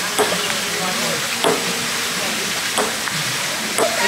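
Table tennis rally: a ping-pong ball's sharp ticks off paddles and table, four of them about a second and a quarter apart, over a steady hiss.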